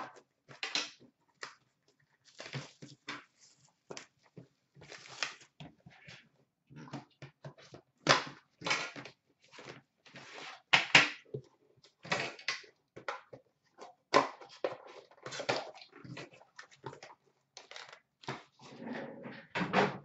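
Plastic wrap and a cardboard sleeve being crinkled, torn and pulled off a hockey card tin by hand: irregular crackles and rustles.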